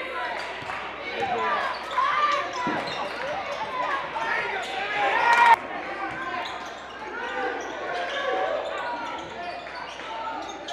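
Basketball game sound in a large gym: a ball bouncing on the hardwood court amid players' and spectators' voices echoing in the hall. The sound builds up and cuts off abruptly about five and a half seconds in, then the same kind of sound goes on more quietly.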